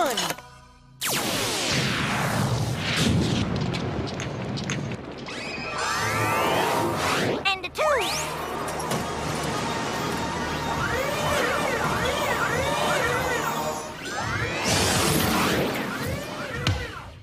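Cartoon action soundtrack: background music with crash and boom sound effects and gliding, rising-and-falling electronic tones.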